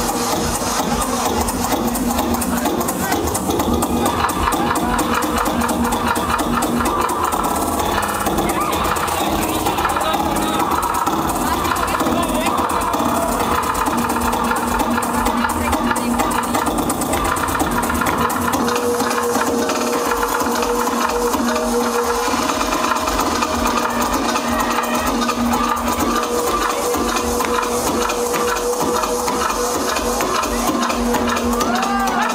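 Electronic dance music from a DJ set played loud over a festival sound system, with a steady beat under a long held drone that drops out briefly twice.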